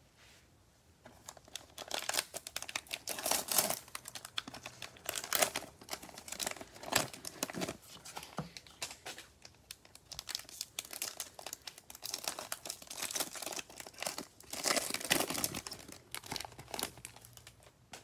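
Plastic cellophane wrapper of a Prizm basketball cello pack being torn open and crinkled by gloved hands, in irregular crackling spells that die away just before the end.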